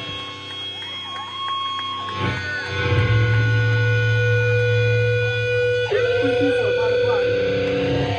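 A live band's distorted electric guitars and bass hold long ringing chords over a low drone. Fresh chords are struck about two seconds in and again about six seconds in.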